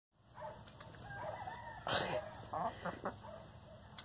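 Chickens clucking softly in short calls, with one brief noisy rustle about two seconds in.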